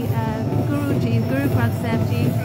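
A person speaking over a steady low rumble.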